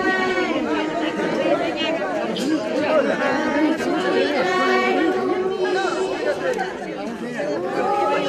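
Many voices talking over one another at once, a crowd's chatter with no single voice standing out.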